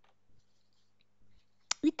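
Near-quiet room with a few faint, short clicks, then a sharp click and a woman's voice starting near the end.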